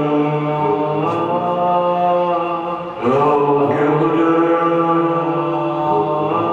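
Live drone music: slow, sustained chords held like a chant, shifting to a new chord about a second in and again about halfway through.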